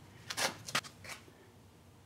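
A few brief scuffing, rustling sounds in the first half second or so, then faint room tone.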